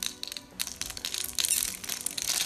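A blade scraping across a bar of soap scored in a fine grid, the small soap cubes snapping off with a dense, crisp crackle.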